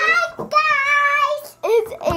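A girl's voice singing out a long, steady held note, followed near the end by a short rising note.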